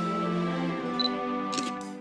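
Instrumental background music with steady sustained notes, and a camera shutter click, two quick snaps, near the end.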